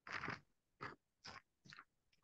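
Pages of a Bible being turned: four faint, short rustles about half a second apart.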